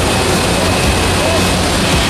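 Loud, steady rush of wind and aircraft engine noise at the open door of a skydiving jump plane in flight, with a faint short voice in it.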